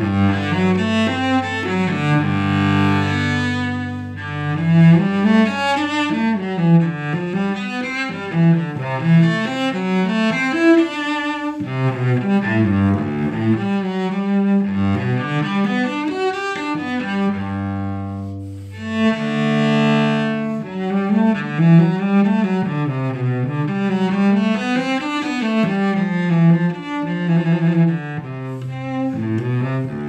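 Solo cello played with the bow, unaccompanied: a melody that moves through many notes, with long held low notes sounding beneath it near the start and again about two-thirds of the way through.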